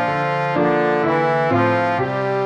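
MIDI synthesizer playback of the tenor part of a mixed four-part choral piece, made for learning the notes. It plays sustained chords that change about twice a second.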